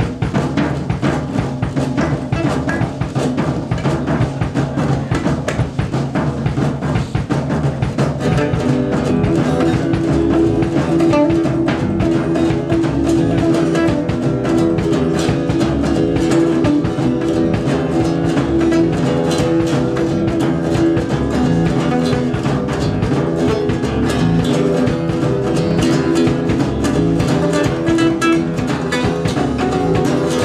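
Live acoustic band playing the instrumental intro of a folk-country song: strummed acoustic guitars over upright bass and a drum kit keeping a steady beat. The sound fills out and gets a little louder about eight seconds in.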